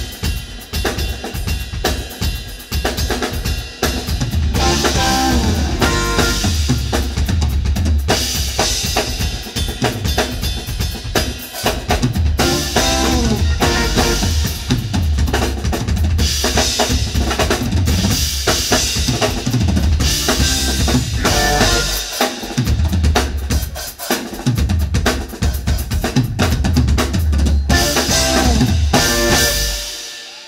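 Live drum kit played hard: a driving kick drum, snare with rimshots and cymbals, with pitched instruments lower in the mix, in a funk-blues band playing on stage.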